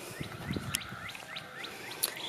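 A bird calling outdoors in a rapid, even series of short downward-slurred chirps, about five a second. There is a soft low thump about half a second in.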